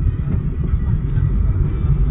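Steady low rumble of tyre and engine noise inside a moving car's cabin.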